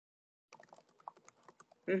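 Computer keyboard typing: a quick, irregular run of light clicks starting about half a second in, picked up by the presenter's computer microphone.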